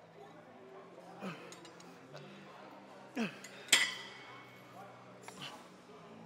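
Metal clink of a cable machine's weight stack and handles, sharp and ringing, loudest once just before the four-second mark. Around it the lifter makes a few short, falling sounds of effort, over a steady low hum.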